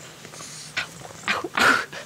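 Three-month-old bulldog puppy vocalizing in play: three short sounds, the last and loudest near the end.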